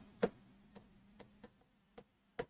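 Chalk tapping and clicking on a chalkboard as letters are written: one clearer tap about a quarter second in, then a few fainter ticks.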